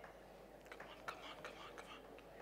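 A quick run of faint clicks from a laptop as it is worked, starting a little past the middle and stopping near the end, over a low room hum.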